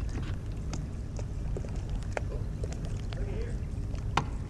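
Steady low wind rumble on the microphone from an open boat, with scattered light clicks and taps.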